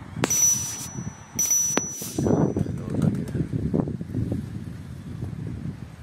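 Subscribe-button overlay sound effect: two quick swishing bursts about a second apart, each with a click, and a high bell-like ding that rings on for about a second. After it comes a low, uneven outdoor rumble of wind on the microphone.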